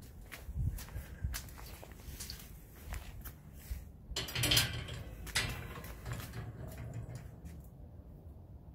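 Handling noise from a handheld phone being carried on foot: scattered clicks, knocks and scuffs, with a brief louder rustle about four seconds in as the phone dips into foliage.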